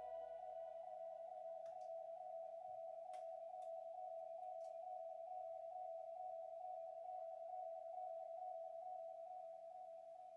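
A single sustained drone note held steady as a song's ambient tail, fading slightly near the end, with a few faint clicks.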